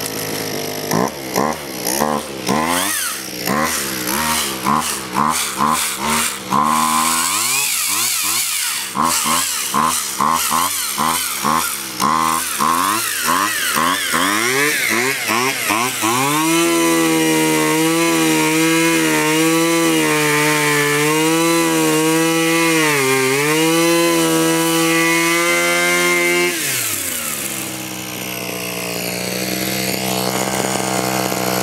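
Small two-stroke string-trimmer engine running just after starting, with its air cleaner off. For the first half it revs up and down over and over, then it holds a steady high speed for about ten seconds, then drops back to a lower idle near the end.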